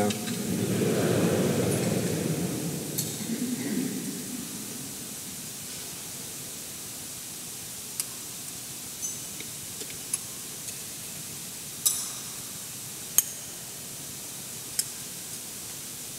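A congregation murmuring a spoken response for the first few seconds, then a quiet church with about six light clinks, scattered over the second half, of glass cruets against metal altar vessels as wine and water are prepared in the chalice.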